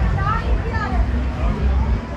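Voices of people talking at the market stalls, over a steady low rumble.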